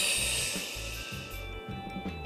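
A long breath blown out through the mouth, a strong airy hiss that fades away over about a second and a half: the exhale that goes with the lift in a Pilates back exercise. Background music with a steady beat runs under it.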